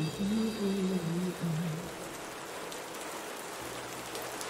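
Steady rain, an even hiss. In the first couple of seconds a low held vocal note from the song sounds over it and then stops, leaving the rain alone.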